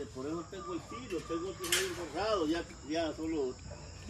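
Quiet, untranscribed speech over a steady high-pitched drone of insects, with a brief burst of noise a little under two seconds in.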